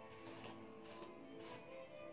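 Faint background music, a melody of held notes, with a couple of soft swishes of a bristle hairbrush drawn through hair.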